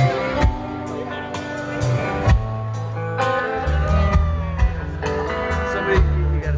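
Live rock band playing: electric guitar lines over bass guitar and drums, with drum hits cutting through.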